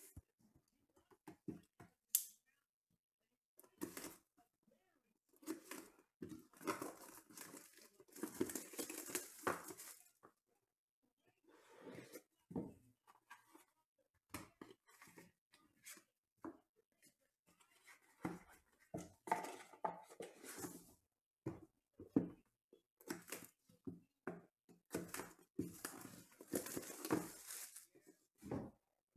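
Sealed trading-card boxes being unwrapped and opened by hand: plastic wrap tearing and crinkling, with cardboard lids and foam inserts handled, in short separate bursts and two longer stretches of rustling.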